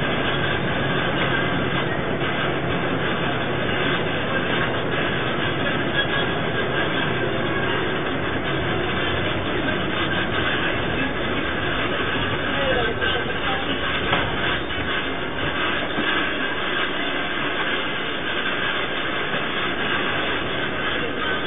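Steady rumble and rattle inside a moving bus, the road and engine noise picked up through the bus's narrow-sounding security-camera microphone, with a few small knocks about two-thirds of the way through.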